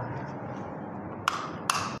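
Steady low background hiss of room noise, with two short, sharp clicks about a second and a half in, less than half a second apart.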